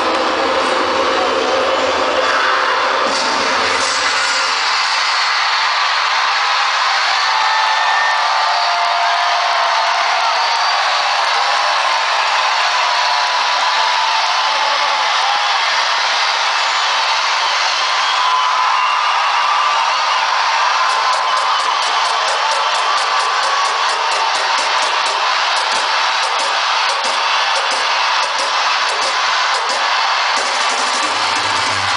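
A DJ's set playing loud over a festival PA with the crowd cheering and whooping. The bass drops out about four seconds in, leaving thin mid and high sound, and a fast ticking rhythm comes in near the end.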